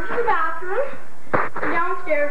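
A high-pitched voice drawn out in wavering, wordless sounds, with a single sharp click a little past halfway.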